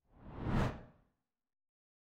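A single short whoosh sound effect for a graphic transition, swelling and fading away within about half a second near the start.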